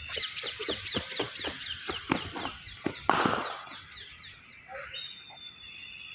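Birds chirping rapidly, a quick run of short falling notes about four a second, for about three seconds. A short noisy burst comes about three seconds in, then the calls fade to fainter chirps with a thin high steady note.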